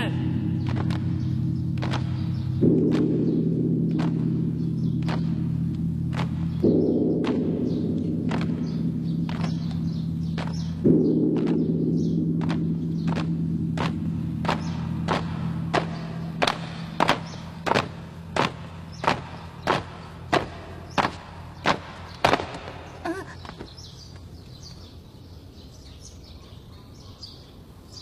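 Footsteps knocking on a hard floor at a steady walking pace, growing louder as they approach and stopping about three-quarters of the way through. Under them, low sustained music chords shift three times and slowly fade.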